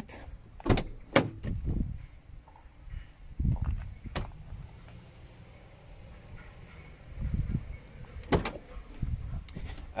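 Rear door of a 2016 Mercedes Sprinter van being unlatched and swung open. Several sharp clicks from the handle and latch in the first two seconds, a couple of low thuds, and another loud click near the end.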